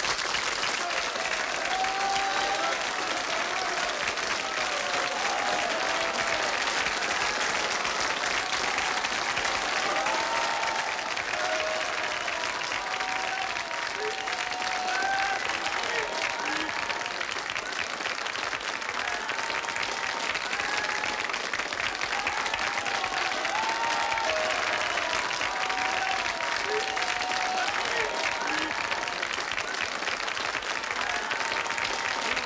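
Audience applauding steadily, a dense patter of many hands clapping, with voices calling out and cheering through it.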